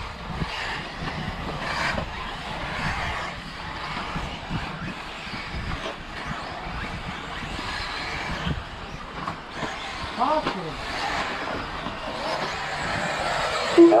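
Electric radio-controlled off-road buggies racing on a dirt track: a steady mix of motor whine and tyre noise, with a quick rising and falling whine of a buggy accelerating about ten seconds in.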